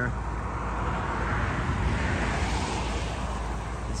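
A vehicle passing on the highway: its road noise swells to a peak about two seconds in and then fades, over a steady low rumble.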